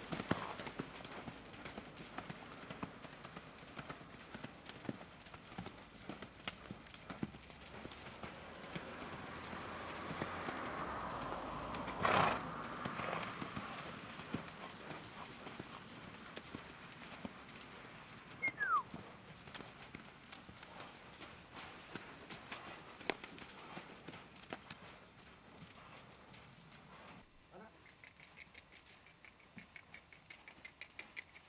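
Hoofbeats of a horse cantering loose on a sand arena, a running series of quick thuds. A loud, short rush of noise comes about twelve seconds in, and the hoofbeats grow quieter near the end.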